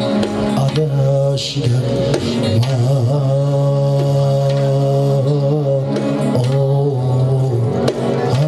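Live Uzbek music from an electronic keyboard synthesizer and a plucked long-necked lute, with long held keyboard notes over a steady bass line.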